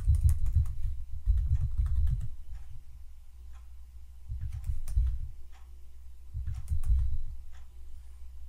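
Computer keyboard typing in three short bursts of keystrokes as numbers are entered, with quieter gaps between.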